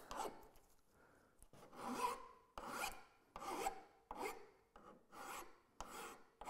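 Flat file rasping across the corner of a cast-iron bench plane sole in about seven short strokes, starting about a second and a half in, taking off the hard corner.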